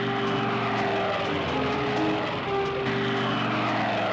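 Propeller-driven fighter planes flying past, the engine note falling in pitch twice as they go by.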